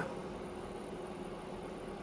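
Dell PowerEdge T620 server's cooling fans running as a steady, even noise with a faint steady tone. It is running a little bit loud because of its high spec and large memory load.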